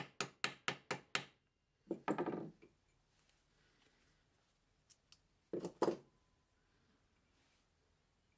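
Ball-peen hammer tapping the end of a steel nail rivet on a steel rod used as an anvil, quick light taps about four a second that stop about a second in. The taps dome the rivet, closing a riveted chainmail link. Two fainter, brief sounds follow, about two and five and a half seconds in.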